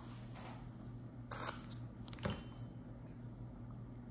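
Faint handling of washi tape as a strip is pulled from the roll, cut and pressed onto a notebook page: soft rustling, a short rasp a little over a second in and a single click a little after two seconds, over a faint steady hum.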